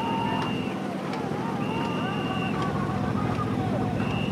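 Boat-race rowers and onlookers shouting over a steadily running boat motor, with a long high whistle-like note repeating about every two seconds.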